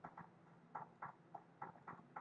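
Faint, irregular light clicks, about four or five a second, over near silence.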